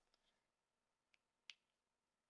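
Near silence broken by three faint clicks of a foundation bottle's pump being pressed, the last one the loudest. The pump is giving out little product.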